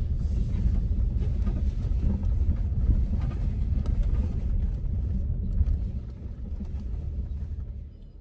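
Low, steady rumble of a vehicle's engine and tyres heard from inside the cabin as it rolls slowly over paving, easing off in the last two seconds.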